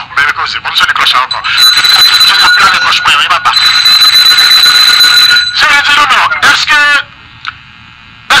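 A voice talking, with a steady high-pitched alarm-like tone held for about four seconds in the middle, briefly broken once, under the speech.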